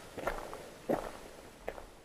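A few faint footsteps on gravel, the clearest about a second in.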